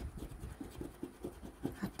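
A large metal coin scratching the latex coating off a paper scratch-off lottery ticket in short, repeated strokes.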